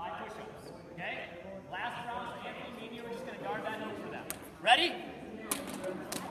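Several voices talking and calling out, echoing in a gymnasium, with one louder rising call about three-quarters of the way through and a few sharp knocks near the end.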